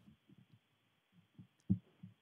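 Soft, irregular low thumps near a lectern microphone over faint hiss, the loudest about two-thirds of the way through.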